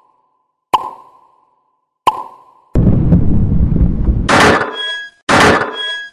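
Cartoon sound effects: two sharp pops about a second and a half apart, each with a short ringing tone. Then about two seconds of low rumbling noise, and two bright hissing bursts with chiming tones near the end.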